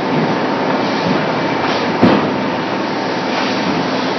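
In-line extrusion and thermoforming production line for polypropylene flowerpots running, a steady loud mechanical noise with a constant hum. A single sharp knock comes about halfway through.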